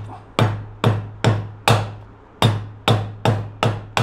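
Japanese handsaw knocked repeatedly against a wooden block: about nine sharp wooden knocks, two or three a second with a short pause in the middle, each leaving a brief low ring. The knocking is done to jar the saw's replaceable blade loose from its handle.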